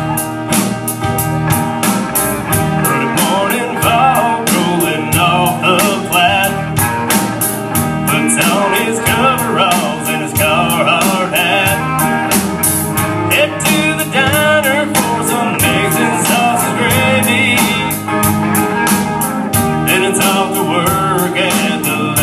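A live band playing on stage: a drum kit keeping a steady beat under two electric guitars and an acoustic guitar, with a man singing lead from a few seconds in.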